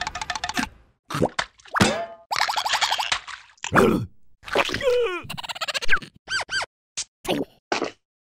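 Cartoon sound effects: a quick string of short pops and boing-like pitch glides, mixed with squeaky, wordless cartoon-character vocal noises and a little music.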